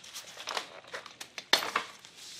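Light clicks and crinkling of gloved hands handling a string trimmer's plastic engine housing around the spark plug boot, with a sharper click about one and a half seconds in.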